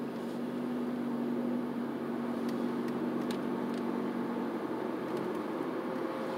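Car driving, heard from inside the cabin: steady engine and road noise with a low hum that fades out about four and a half seconds in, and a few faint clicks.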